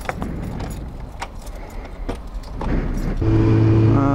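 Scattered sharp clicks and rattles of handling, like keys, for about three seconds. Then a Yamaha YZF-R6's inline-four engine comes in, running with a steady, even note.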